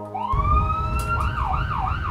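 Houston Fire EMS ambulance siren winding up in a rising wail, then switching to a quick up-and-down yelp, over low street traffic rumble. Background music cuts off just before the siren starts.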